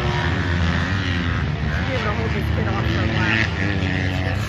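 Motocross bikes running on the track, a steady engine drone carried from a distance, with people's voices talking over it.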